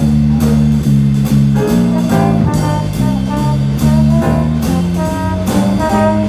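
Live jazz-blues band playing an instrumental passage: a repeating bass and guitar riff over a steady drum-kit beat with cymbals, with piano, tenor saxophone and trombone.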